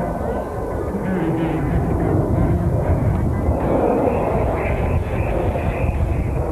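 Engines of an aerobatic formation of military aircraft passing overhead, heard as a steady rumble that swells about four seconds in.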